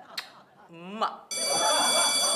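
A kiss smack and a short rising vocal glide. About a second and a half in, a steady bright electronic ring like a bell starts and holds, with voices beneath it.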